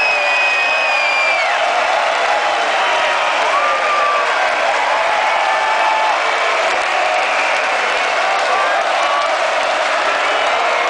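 Arena concert crowd cheering, shouting and clapping close around the microphone, with a long, high whistle from a fan in the first second and a half.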